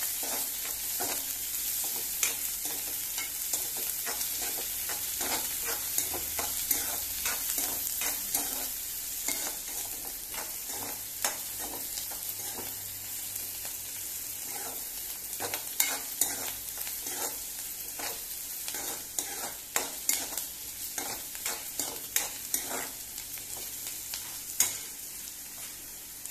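Sliced onions and green chillies sizzling as they sauté in hot oil in a non-stick kadai, with a spatula scraping and tapping against the pan again and again as they are stirred.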